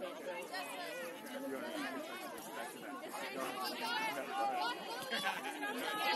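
Many overlapping voices of soccer players and sideline spectators calling out, the words indistinct, getting louder toward the end.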